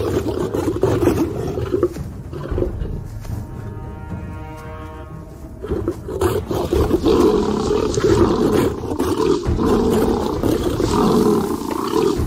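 Lions fighting at close quarters, roaring and snarling at each other through a scuffle, easing off for a few seconds in the middle and loudest in the second half.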